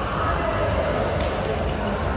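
Busy badminton hall: a steady hum of the large hall with background voices, and a few sharp taps from racket strokes and shoes on the court in the second second.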